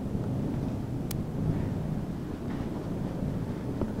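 Steady low rumbling noise on the microphone, with one faint click about a second in.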